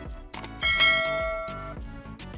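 A bell-like ding rings out a little over half a second in and fades away over about a second, over background music. It is the notification-bell sound effect of a subscribe-button animation.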